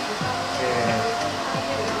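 A steady rushing noise with background music playing under it.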